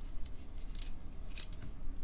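Clear plastic card holder handled by gloved hands: three short plastic scrapes and rustles within two seconds, as a trading card is slid into and set in its holder.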